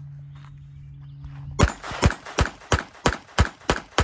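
Ruger LCP II Lite Rack .22 LR pistol fired in a quick string of about eight shots, roughly three a second, starting about one and a half seconds in. It cycles without a stoppage on CCI Velocitor and Mini-Mag ammunition.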